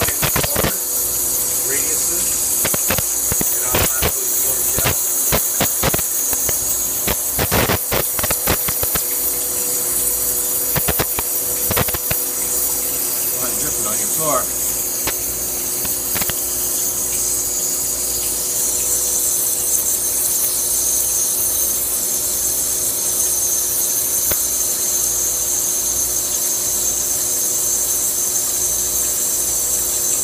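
Wire EDM machine cutting: a steady high hiss from the sparking wire and its water flush over a steady electrical hum, with irregular sharp clicks, most of them in the first twelve seconds.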